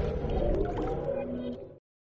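Tail of a TV channel's electronic intro jingle, a wavering, swirling tone that fades away and cuts to silence just before the end.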